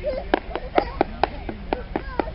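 A quick run of about seven sharp smacks, roughly four a second, with a faint voice between them.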